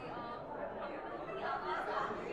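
A woman's voice talking, with overlapping chatter from other people around.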